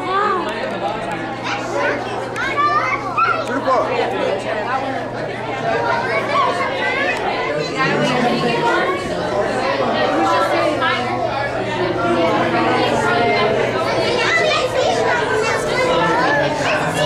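Crowd chatter: many adults and children talking at once, overlapping throughout, over a steady low hum.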